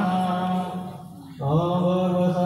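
A voice chanting a devotional mantra in long held notes, pausing briefly about a second in and then taking up the chant again.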